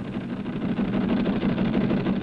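Teletype machine clattering: a fast, steady run of mechanical typing strikes that starts abruptly.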